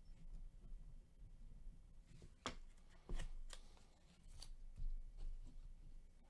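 Faint, irregular light clicks and rustles of trading cards being handled on a tabletop, about half a dozen taps in the second half.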